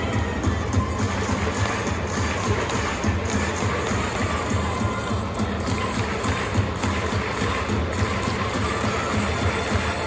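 Cheering music playing through a domed baseball stadium for the batter at the plate, over a steady crowd noise.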